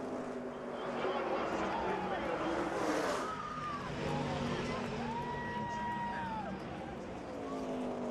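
Several V8 stock-car engines running at racing speed, with a swell of noise about three seconds in as the field passes.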